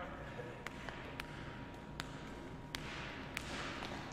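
Basketball bouncing on a hardwood gym floor: about five faint, sharp bounces at uneven intervals, in a large echoing hall.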